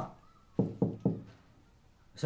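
Three knocks on a closed wooden panel door, evenly spaced about a quarter second apart, starting about half a second in.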